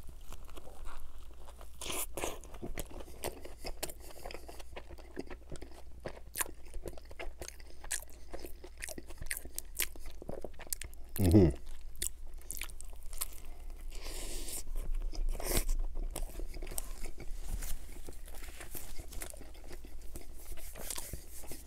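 Close-miked eating of a McDonald's Junior Chicken sandwich: bites and chewing with frequent crunches from the breaded chicken patty and lettuce. About eleven seconds in, a short, louder low sound from the eater falls in pitch.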